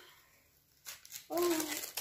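A bag rustling as hands rummage through it, starting about a second in, with a woman's short "oh" over it.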